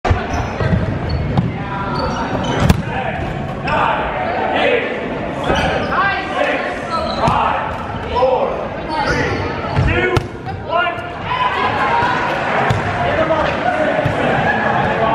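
Rubber dodgeballs bouncing and thudding on a hardwood gym floor, with several sharp impacts, over a steady din of players' voices echoing in a large gym.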